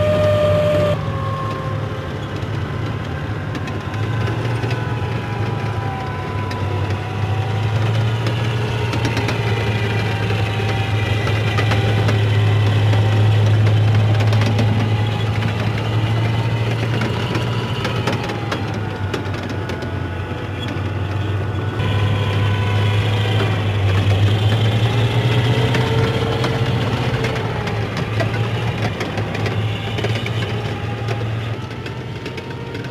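Assault Amphibious Vehicles (AAV7) driving past on their tracks: a deep, steady diesel engine drone with track noise, swelling and shifting in pitch as the vehicles go by.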